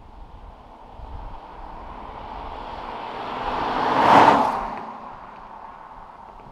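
A 2015 Holden Caprice V with its L77 V8 drives past at speed, engine and tyre noise building as it approaches, peaking about four seconds in with a whoosh as it passes, then fading away.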